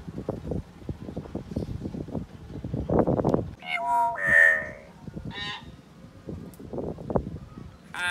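Caged hill myna calling: a loud run of pitched calls about halfway through, peaking in a clear whistled note, then a shorter call a second later and another at the very end. Low rustling and knocking noises come first.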